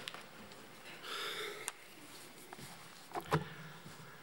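Quiet hall through the lectern microphone, with a short sniff about a second in and a couple of sharp knocks near the end.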